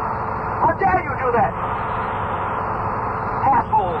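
Steady background rumble of a tour bus on an old tape recording that sounds muffled, with no high end. A man's voice breaks in briefly about half a second in and again near the end.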